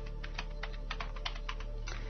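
Computer keyboard keys being typed, about a dozen quick, irregular clicks, over a faint steady music bed.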